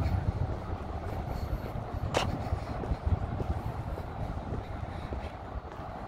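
Steady low rumble of road traffic, with a single sharp click about two seconds in.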